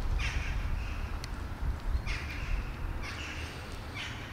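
A crow cawing: four short, harsh caws, one right at the start and three more in the second half.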